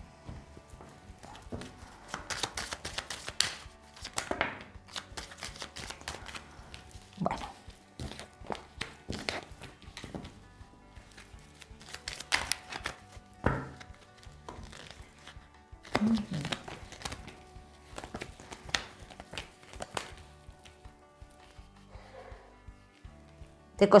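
Tarot cards being handled on a table: shuffled, flicked and laid down in a string of irregular light slaps and clicks, with soft background music underneath.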